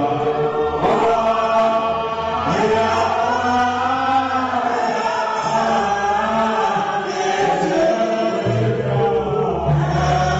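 A man's voice chanting worship through a microphone over low, sustained instrumental notes, with deeper bass notes coming in near the end.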